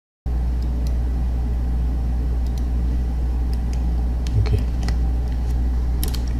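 Steady low electrical hum in the background of a voice-over microphone, starting abruptly a moment in, with a few faint clicks scattered over it.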